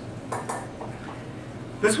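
Dishes and cutlery clinking, a couple of short light clinks in a lull between speech.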